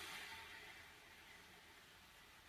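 A man's long, steady exhalation through the mouth, a faint hiss of air that fades away over the first second or so. It is the forced out-breath that goes with lifting the hips in a Pilates shoulder bridge.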